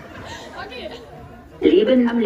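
Voices chattering low, then a loud voice breaks in about one and a half seconds in.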